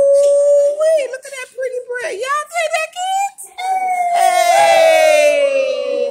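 Children's high voices calling out in long held notes: one long note, a flurry of short calls in the middle, then a second long note that slowly slides down in pitch.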